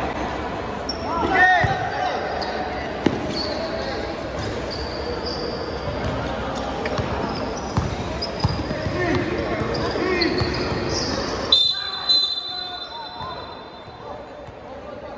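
A basketball bouncing on a hard tiled floor during live play in a large echoing hall, with sharp knocks and short squeaks over the voices and shouts of players and spectators. Near the end the crowd noise drops away and a steady high tone sounds.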